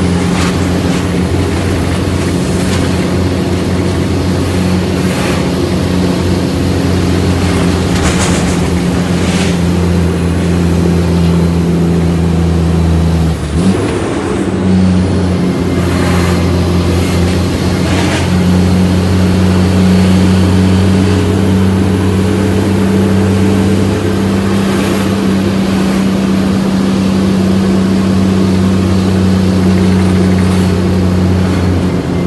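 Shacman F3000 heavy truck's diesel engine running steadily on the road, heard from inside the cab. About halfway through, the engine note breaks off for a moment and comes back slightly higher. A few brief sharp sounds come through over the engine.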